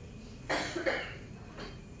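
A person coughing: two short coughs in quick succession about half a second in.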